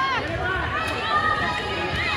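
Overlapping chatter of several people talking and calling out at once, many of the voices high-pitched.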